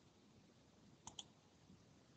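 Near silence, broken by two quick faint clicks about a second in.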